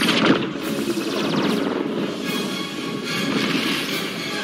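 Film soundtrack: dramatic score under a science-fiction energy-beam effect that bursts out at the start and trails off into a sustained rush.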